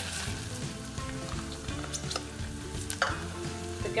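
Chopped onion frying in melted butter in a small stainless steel saucepan, sizzling steadily, with a few light clicks of utensils against the pan.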